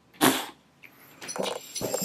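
A man laughing: one sharp, breathy burst just after the start, then a few shorter chuckles near the end.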